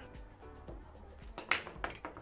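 Two sharp clacks of billiard balls striking, about a third of a second apart in the second half, over a low pool-hall background.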